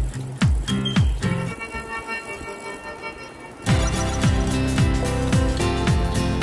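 Background dance music with a steady kick drum about twice a second. The beat drops out for about two seconds in the middle, leaving held chords, then comes back in louder.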